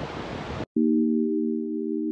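Wind and surf noise on the microphone that cuts off abruptly under a second in, followed by background music: a steady, sustained synthesizer chord of several held notes.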